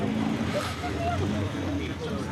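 A vintage cycle car's engine running steadily, a low continuous hum, with faint voices in the background.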